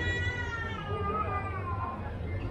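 A long, high-pitched wailing call, one drawn-out note that slowly falls in pitch for about two seconds, heard over the street hubbub.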